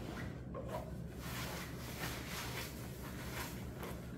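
Wrapping paper rustling and crinkling as it is pulled out of a garment bag, with the bag's material handled too. A continuous rustle full of small crackles.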